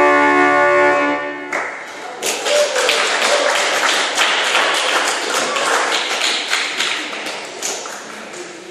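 Pipe organ built by Joaquín Lois in 2009, holding the final chord of the piece; the chord cuts off about a second and a half in and leaves a short reverberant tail. The congregation then applauds with dense clapping that thins toward the end.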